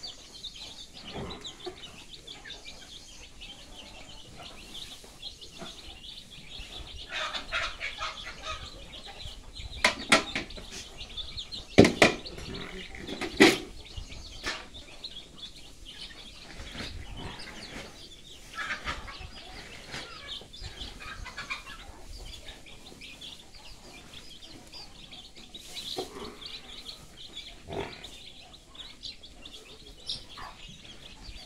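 A flock of young desi chicks cheeping continuously as they feed from a plastic tub. A few loud sharp knocks come in a cluster about a third of the way in.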